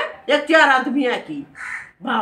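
A woman talking animatedly, with one short harsh caw of a crow near the end.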